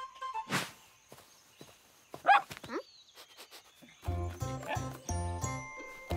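Sparse cartoon sound effects: a swish, then a short pitched sound sliding up and down about two seconds in. Light background music with a bouncing bass line starts about four seconds in.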